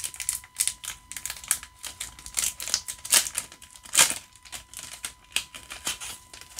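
Trading cards handled by hand as a pack is sorted through: an irregular run of light clicks and taps, several a second, with sharper snaps a little after three seconds and at about four seconds.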